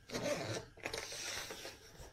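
Zipper of a hard-shell carrying case being pulled open in several quick strokes, the loudest at the start, with light handling of the case.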